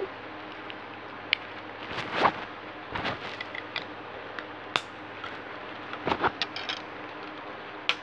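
Plastic Lego bricks being handled and pressed together: irregular small clicks and knocks, with a few sharper snaps scattered through, including one near the middle and one at the very end.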